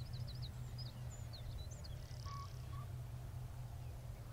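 Faint, short, high bird chirps and calls in the first half, with a brief buzzy note near the middle, over a steady low rumble that is the loudest sound throughout.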